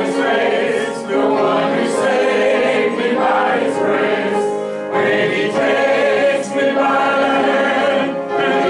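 A church congregation of men and women singing a hymn together from hymnals.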